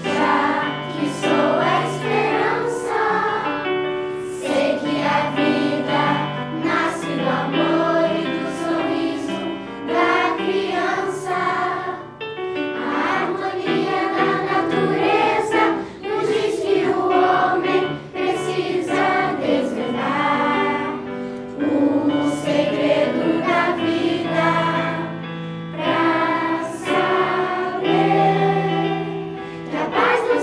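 Children's and youth choir singing a song in unison, accompanied by an electronic keyboard holding low sustained notes.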